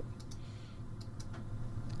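A few faint, separate clicks of a computer keyboard and mouse, over a low steady hum.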